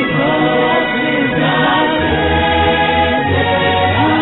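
Choir singing gospel music over held bass notes.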